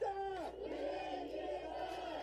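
Bichon frise whining in drawn-out cries that rise, hold and fall, one after another.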